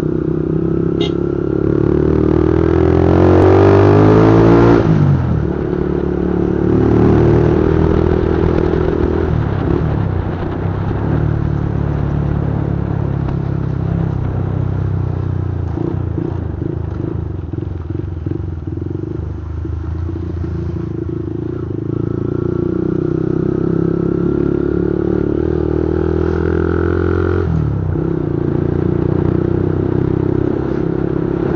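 Motorcycle engine running under way, heard close up from a camera on the bike. Its pitch climbs as it accelerates over the first few seconds, then falls back, rises again later and drops off sharply near the end.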